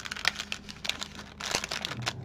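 Clear cellophane bag crinkling as patterned papers are slid back into it by hand, a run of irregular crackles with a denser patch about one and a half seconds in.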